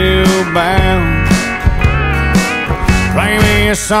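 Country band playing: electric and steel guitars over bass and drums, with sliding guitar notes and a steady beat.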